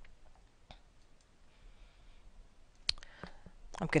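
A few clicks of a computer mouse over quiet room tone: faint ones about a second in, and one sharper click about three seconds in.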